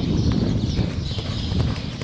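Hoofbeats of a racehorse galloping on a grass track.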